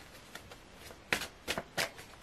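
A deck of tarot cards being shuffled by hand: a few faint ticks, then three sharp card slaps about a third of a second apart in the second half.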